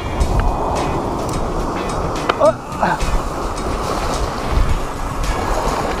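Waves washing over the rocks, with wind rumbling on the microphone.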